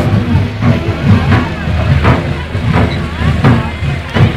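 A vehicle's engine running close by, with a regular thump about every two-thirds of a second.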